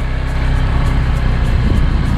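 Motorcycle engine running under way on a rough dirt road, with wind buffeting the microphone and jolts from the uneven surface in the second half.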